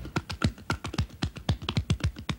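Cardboard LP record jackets being flipped through on a shelf, each sleeve tapping against the next in a quick, irregular run of clicks.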